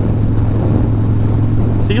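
1991 Harley-Davidson Dyna Glide Sturgis's 1340 cc Evolution V-twin running steadily at highway cruising speed, heard from the saddle along with road noise.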